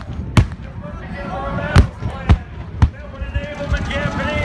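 People talking nearby over a low rumble, with four sharp cracks about half a second to a second apart; the loudest comes near the middle.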